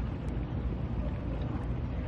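Wind buffeting a camcorder microphone outdoors: a steady low rumble.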